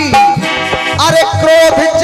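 Harmonium playing held notes over a steady drum beat: the accompaniment of a Bundeli jawabi kirtan.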